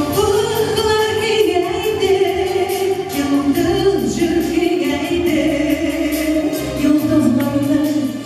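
A woman singing a pop ballad into a microphone, amplified over a backing track with a steady beat; she holds long sung notes.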